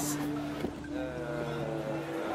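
Steady engine-like hum, as of a vehicle running nearby, with a second slightly falling drone joining it about halfway through.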